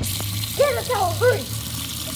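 Steady hiss of tap water running into a kitchen sink, with a low hum underneath. Excited high voices shout "go, go" over it.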